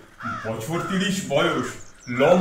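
A person speaking, with a crow cawing behind the voice as a background sound effect.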